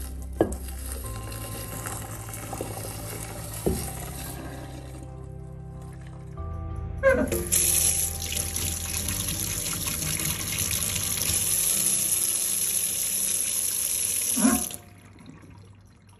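Kitchen tap running into a stainless steel sink, the stream washing white granules down the drain. About seven seconds in the flow becomes a full, louder stream splashing on the steel basin, then it is shut off sharply near the end, with a few knocks along the way.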